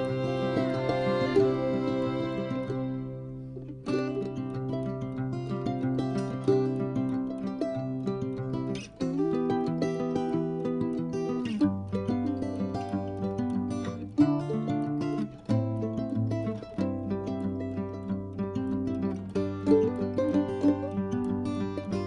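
Background music led by plucked string instruments playing a melody, fading briefly about three seconds in before the notes pick up again.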